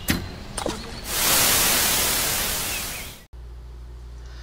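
Title-card sound effect: a loud burst of static-like hiss lasting about two seconds, easing off a little before it cuts off suddenly. Two short clicks come just before it.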